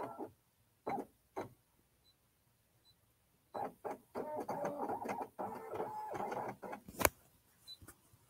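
Baby Lock Accord embroidery machine skipping forward through stitches: faint short key beeps at first, then its embroidery-module motors whir for about three and a half seconds as the hoop moves to the new stitch position, ending with a sharp click.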